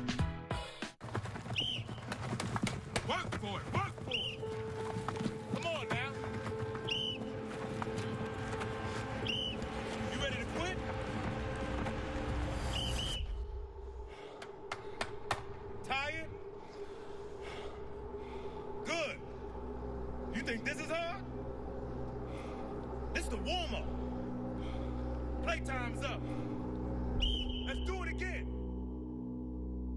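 Commercial soundtrack: music with football-practice sounds, including short whistle blasts recurring every few seconds.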